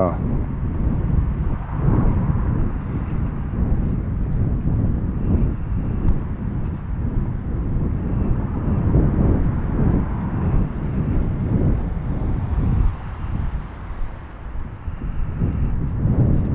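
Outdoor street ambience: a continuous low rumble that rises and falls in level, with no single clear source standing out.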